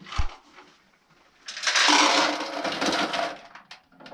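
Shelled corn kernels pouring out of a handheld grain moisture tester's test cell into a bucket: a loud rattling rush for nearly two seconds that tails off, after a single click as the tester is picked up.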